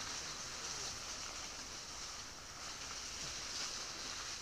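Steady high-pitched chorus of night insects, an even unbroken trill.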